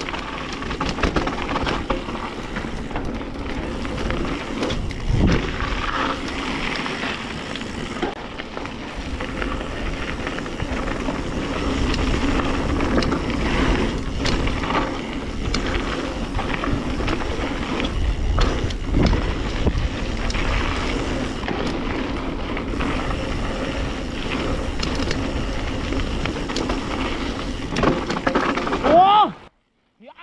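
Mountain bike descending a rough dirt-and-rock forest trail: tyres rolling over loose ground, with the chain and suspension rattling and frequent knocks from bumps, over wind noise. Near the end a short voice sound is heard, then the sound cuts out.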